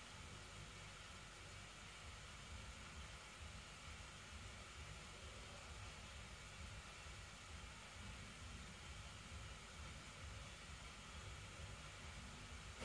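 Near silence: room tone with a faint, steady hiss.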